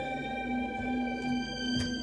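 Electronic keyboard played as a four-hands duet: a low note repeated at a steady pulse under sustained higher held tones, a slow dramatic piece. A light click sounds near the end.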